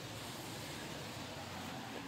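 Steady, even hiss with a faint low hum underneath: background noise with no distinct event.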